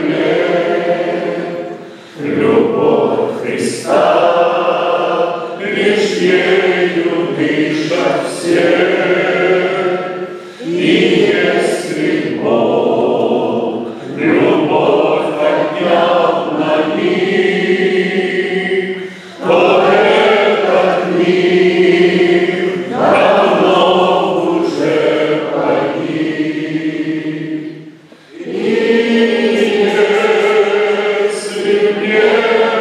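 Men's voices singing a church hymn together, the lead voice amplified through a handheld microphone. They sing in long phrases with short breaks between them.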